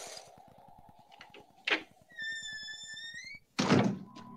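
Film soundtrack: a door shutting with a heavy thunk near the end. Before it there is a sharp click, then a high steady tone lasting about a second that rises at its end.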